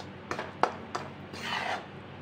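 Steel spatula scraping and stirring through coarse-ground moong dal frying in ghee in a stainless steel kadhai, with a few sharp metal clicks against the pan in the first second and a longer scrape about one and a half seconds in.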